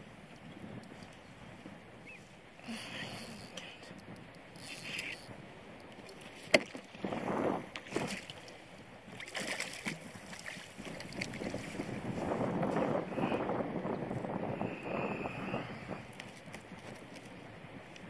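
Australian salmon thrashing in the water beside a kayak as it is netted: irregular splashing and sloshing, with wind on the microphone. There is a single sharp knock about six and a half seconds in.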